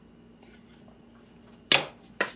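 A slab of HDPE plastic set down on a wooden workbench: a few faint handling ticks, then one sharp clack near the end.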